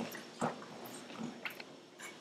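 A few faint knocks and rustles, the clearest about half a second in, over a quiet room hiss: handling noise at the lectern.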